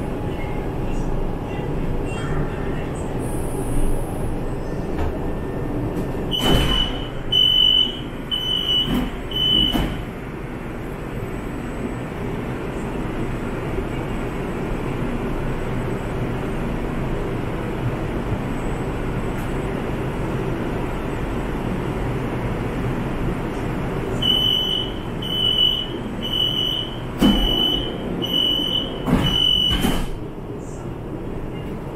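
LRT car door-warning chime: four high beeps with a thud as the doors open about six seconds in. Over the steady hum of the standing train, a longer run of beeps sounds near the end, with two thuds as the doors close.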